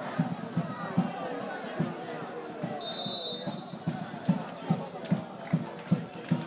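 Spectators chatting close to the microphone at a football match. A referee's whistle sounds once, steady and just under a second long, about halfway through. Dull knocks recur throughout.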